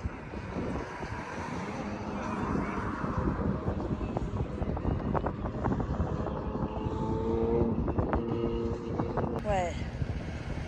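Road traffic on a bridge: passing cars make a steady noise that swells through the middle and eases again. A few light clicks and a brief voice come near the end.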